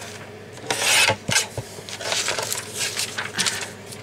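A sheet of paper sliding and rubbing against a plastic paper trimmer in several short scraping strokes, loudest about a second in.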